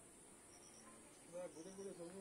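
Faint, steady high-pitched drone of insects in the surrounding forest, with short chirps repeating every second or so; a faint voice comes in past the halfway mark.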